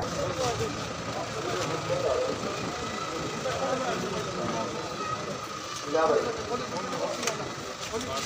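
Murmur of a large outdoor crowd, many people talking at once at a distance, over a faint steady hum. A single nearer voice stands out briefly about six seconds in.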